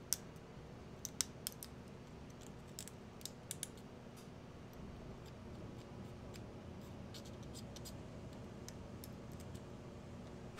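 A slim metal hand tool picking and scraping at a hard cast resin part, giving a run of small sharp clicks and scratches in the first four seconds and sparser, fainter ones after, over a steady low background hum.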